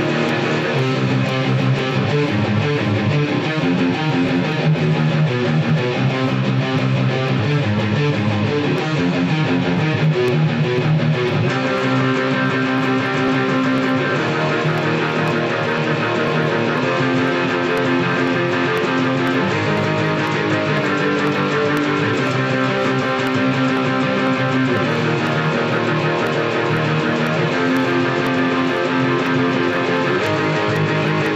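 Electric guitar, a Schecter C-1 Hellraiser with EMG pickups, playing distorted metalcore riffs: long held chords that change every few seconds, with no break in the playing.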